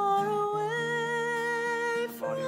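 A hymn sung by a voice with instrumental accompaniment. The melody steps up to a higher note about half a second in and holds it.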